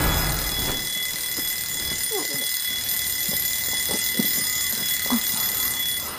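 An electronic alarm ringing steadily and continuously in a high, many-toned ring, going off to wake a sleeper.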